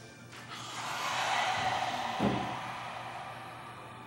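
A long, forceful open-mouthed breath out with the tongue stuck out: the lion's breath of yoga's lion pose. It swells about half a second in and fades over the last second. A brief low knock comes about halfway through.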